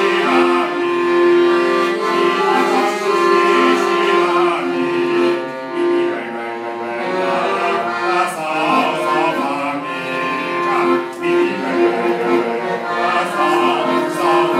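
Piano accordion playing a Taiwanese ballad: steady held chords, with a sliding, wavering melody line over them.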